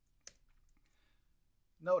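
A single sharp computer keyboard keystroke, the Enter key pressed once to run a typed terminal command.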